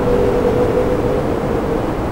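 Steady background noise: an even hiss with a faint, steady humming tone, and no speech.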